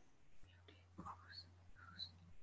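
Near silence: faint room tone with a low steady hum that starts about half a second in, and a few faint, brief sounds.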